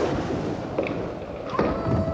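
Irregular thumps and knocks over a noisy background, then a sustained, slightly wavering tone starts near the end.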